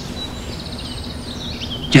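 Outdoor ambience: small birds chirping faintly in a quick trill over steady background noise and a low hum.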